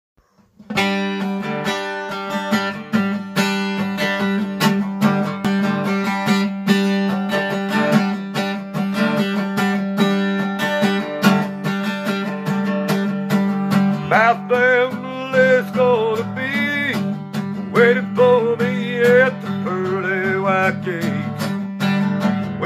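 Guitar strummed in a steady rhythm, starting about a second in. A man's singing voice joins over the chords about two-thirds of the way through.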